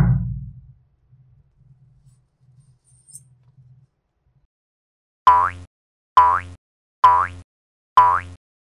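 A heavy thump as the sand-packed bottle mold is set down, followed by a faint low rumble. From a little past five seconds in, the same short cartoon pop effect with a quick upward swoop in pitch repeats about once a second, four times.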